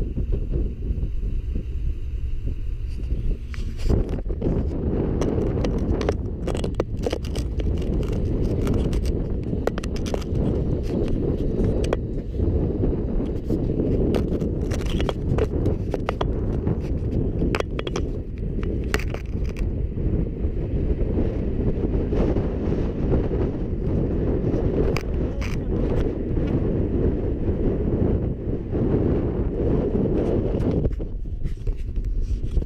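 Wind buffeting the camera microphone as a steady low rumble, with irregular crunching and scraping clicks over it from about four seconds in.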